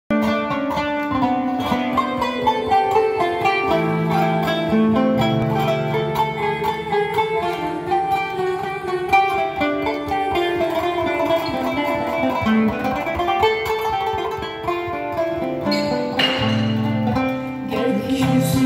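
Kanun, the Turkish plucked zither, playing a melody in quick runs of plucked notes, with some longer low notes held underneath.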